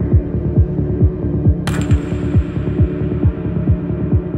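Dark progressive psytrance: a kick drum thumping a little over twice a second over a rolling bass and a held synth tone. About one and a half seconds in, a bright noise hit like a crash cymbal comes in and rings away.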